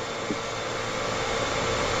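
Steady background hiss in the call audio, even and without any tone, growing slightly louder toward the end.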